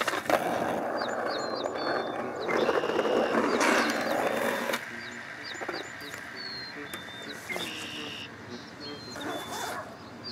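Skateboard wheels rolling over pavement, a loud rumble for about the first five seconds that then stops. Small birds chirp throughout.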